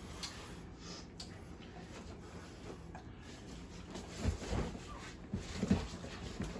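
Bare feet and bodies shuffling and thudding on foam grappling mats, quiet at first, with a few louder thumps in the last two seconds as two people go to the mat.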